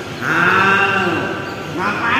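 A person's drawn-out, wordless voice, one long vowel call that rises and then falls in pitch over about a second, with a second call starting near the end.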